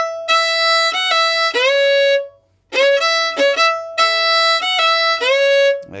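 Fiddle playing a short bowed phrase twice with a brief pause between: the E–F–E figure, its first E brought in early on a down bow, with notes slid up into pitch.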